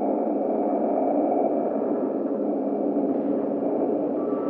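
Steady dark ambient drone of an abandoned-building ambience: a dense hum of several low steady tones, with a faint high ringing tone above it.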